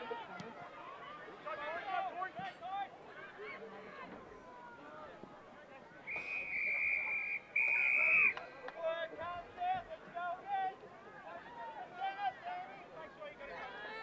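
Two long blasts on a football umpire's whistle about six seconds in: the first about a second and a half, the second shorter. Spectators chat behind them.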